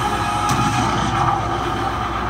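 A single handgun shot from a TV drama's soundtrack, sharp and sudden about half a second in, over steady background music.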